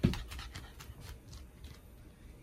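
A Shiba Inu jumping down from a wooden window ledge: a thump as it lands, then a quick, uneven run of light clicks from its paws and claws on the wooden floor.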